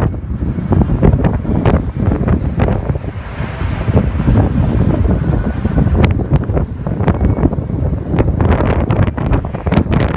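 Loud, uneven wind buffeting the microphone of a camera filming from a moving car, with many brief crackles and a slight easing about three seconds in.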